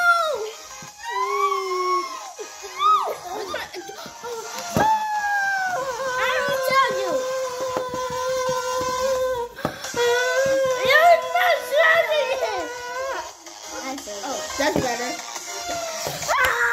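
High-pitched wordless children's voices that slide up and down, with long held notes through the middle and several voices overlapping.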